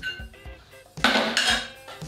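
A small pan clattering as it is set down on a hard surface about a second in, over background music.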